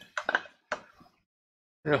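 A few light clicks and knocks within the first second: a tobacco pipe being set into a cast resin pipe stand.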